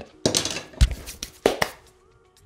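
Handling sounds at a blacksmith's anvil: a short rustle, then one dull knock a little under a second in as the forged steel tongs are set down, followed by two quick light clicks.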